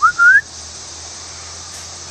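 A person whistling two quick rising notes, the second a little longer, right at the start, over a steady high hiss.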